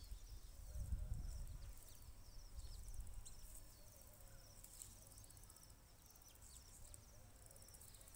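Faint outdoor ambience with repeated short, high chirps, and a low rumble during the first three seconds as soil is scraped and pressed by hand around a sapling.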